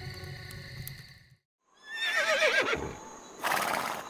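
A horse whinnies about two seconds in: one wavering call that falls in pitch, followed near the end by a brief breathy blow. Before it, background music fades out in the first second.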